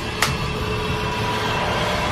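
A sharp click just after the start, then a tense soundtrack drone: a steady rumbling hiss with a few held tones that swells slightly.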